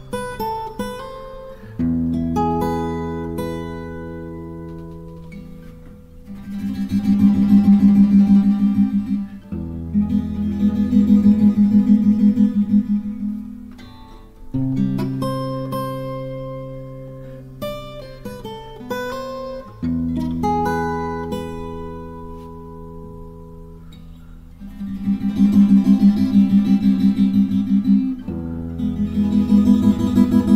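Steel-string acoustic guitar played solo: fingerpicked arpeggios over ringing bass notes, twice breaking into louder, rapid strumming passages.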